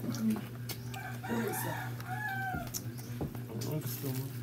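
A rooster crowing once, a drawn-out crow of several rising and falling parts from about a second in to nearly three seconds, over a steady low hum and a few light clicks.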